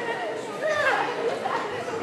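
Speech only: people talking, with overlapping chatter in a large hall.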